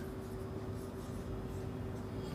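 Faint rubbing of a marker pen on a whiteboard as a word is written, over a faint steady hum.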